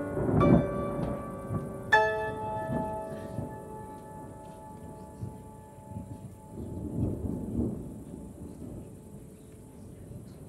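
Grand piano chords, the last one struck about two seconds in and left to ring and fade away. Low rumbles of distant thunder swell under it, once at the start and again near the middle.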